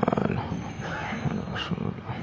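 A man's voice: a loud, drawn-out, buzzy vocal sound at the very start, followed by quieter broken speech-like sounds.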